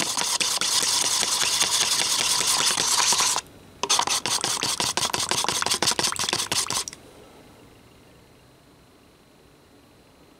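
Two-part epoxy resin being stirred briskly with a wooden dowel in a paper cup, the stick scraping round the cup's side and bottom in quick strokes. The stirring pauses briefly a little after three seconds in, resumes, and stops about seven seconds in, leaving faint room tone.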